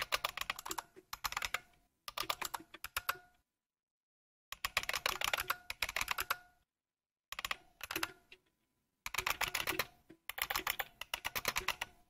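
Typing on a computer keyboard: bursts of rapid keystrokes with short pauses between them, and two brief silent gaps.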